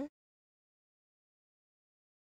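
The end of a commentator's 'mm-hmm' right at the start, then complete silence with no room tone at all.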